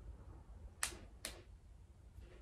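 Two short, sharp clicks less than half a second apart, about a second in, over faint room hum.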